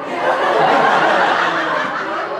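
Laughter, breathy and without clear voiced pitch, rising about a quarter second in and easing off near the end.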